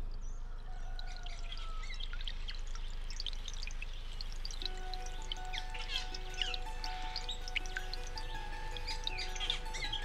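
Many small birds chirping and singing in woodland, with soft music underneath whose long held notes come in about halfway through.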